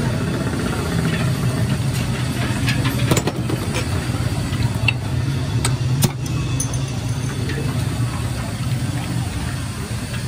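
A steady low machine hum runs under clinks of metal and glass. About six seconds in there is a sharp click as a glass soda bottle is opened, and there is another click a little after three seconds.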